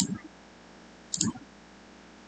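A single short click about a second in, over a faint steady hiss.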